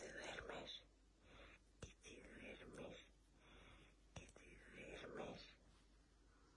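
Quiet whispering in several short, breathy phrases, with a couple of faint clicks between them.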